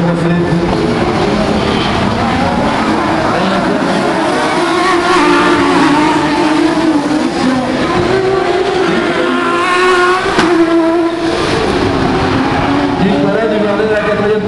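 Autocross racing cars' engines revving hard as they race around the circuit, the engine notes rising and falling through acceleration and gear changes, with one engine climbing sharply in pitch about ten seconds in.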